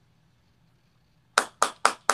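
Near silence, then about a second and a half in a quick run of sharp hand claps starts, three of them at about four a second, continuing on.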